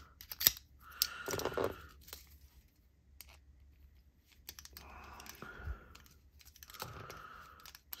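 Scattered light clicks and taps of a Kydex sheath and a metal bit driver being handled, as the driver's bit is set into a screw on the sheath's belt clip.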